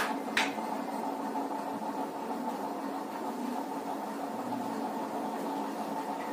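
Steady background hum and hiss of the room, with two light clicks in the first half-second.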